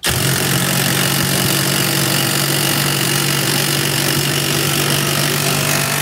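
Uaoaii cordless brushless impact wrench on its highest setting, hammering steadily as it drives a hex-head lag bolt down into a wooden board.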